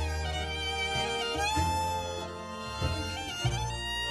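Instrumental passage of Swiss folk music: a fiddle plays over a Schwyzerörgeli (Swiss button accordion), a Halszither (cittern) and a double bass, with no singing.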